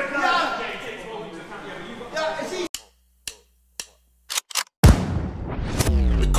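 Indistinct voices, then the sound cuts to dead silence broken by about five short, sharp gunshot-like cracks, and a loud electronic music sting starts about five seconds in.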